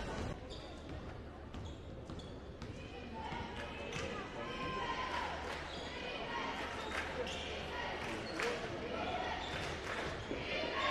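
A basketball dribbled repeatedly on a hardwood gym floor, its bounces ringing in the large gymnasium, with voices of players and spectators underneath.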